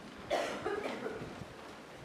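A single cough about a third of a second in, fading away over the following second.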